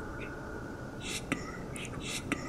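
Whispered voices: short hissing, sibilant whispered syllables with a sharp click past halfway, over a faint steady tone.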